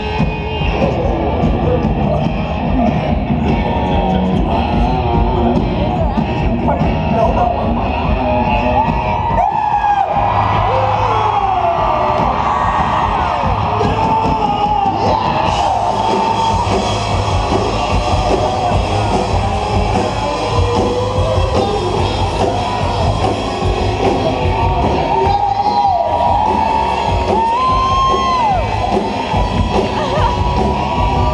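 A live rock band playing an electric-guitar riff over drums, with the crowd yelling and cheering over the music.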